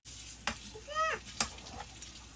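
A fork clinking and scraping in a metal pot as steamed corn cuscuz is stirred and loosened, with two sharp clinks about a second apart. Between them, a brief vocal sound falls in pitch.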